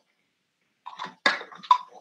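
Silence for about a second, then a few short, broken-up fragments of a person's voice coming through a video call.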